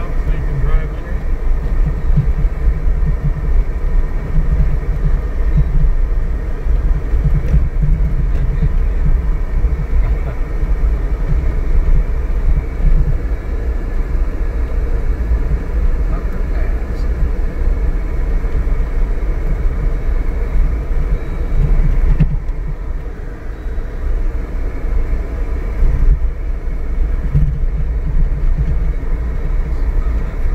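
Off-road vehicle driving slowly on a rough dirt track, heard inside the cabin: a steady low engine-and-tyre rumble that swells and eases with the bumps.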